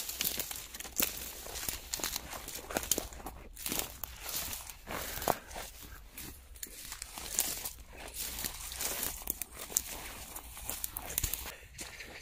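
Footsteps through tall dry weed stalks, the brittle stems brushing and crackling in an irregular run of small snaps.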